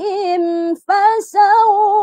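A woman reciting the Quran in melodic taranum style in the Bayati mode, holding long ornamented notes with a wavering pitch. A short break comes a little under a second in, followed by a brief 's'-like hiss before the chant resumes.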